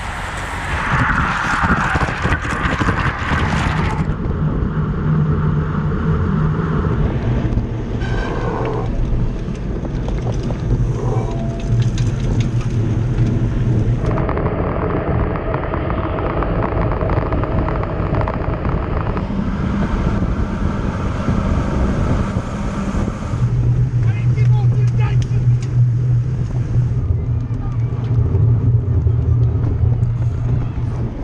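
Audio from cameras mounted on racing road bicycles: wind rushing over the microphone and tyre noise on the road, changing in character at each cut between cameras. A steady engine hum runs underneath and is loudest in the last several seconds.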